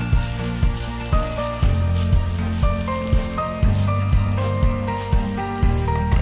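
Background music with a steady beat of about two strikes a second, a held bass line and a simple melody.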